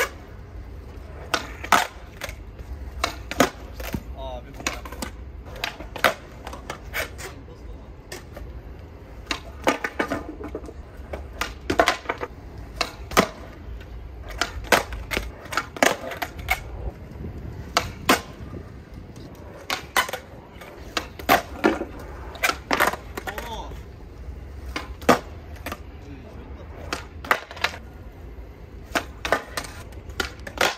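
Skateboard riding on concrete: wheels rolling with a steady low rumble, broken by many sharp clacks of the deck and trucks hitting the ground at irregular intervals, as from pops and landings.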